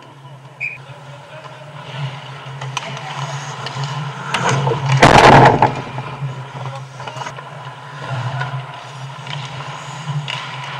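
Ice skate blades carving and scraping on the ice rink, over a steady low hum of the arena. About five seconds in, a loud, longer scrape of blades on the ice builds and peaks as a player skates close past the camera.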